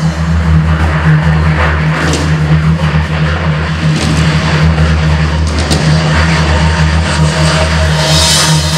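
A loud, steady low bass drone over a concert sound system, held without a beat, with a noisy wash above it.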